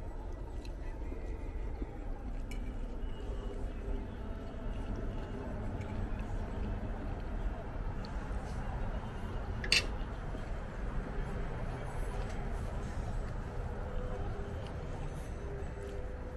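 Quiet steady background noise with a single sharp clink about ten seconds in.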